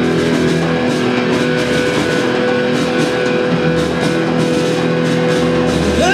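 Rock band playing live, instrumental with no singing: electric guitars over bass and drum kit, with one steady note held through most of the stretch.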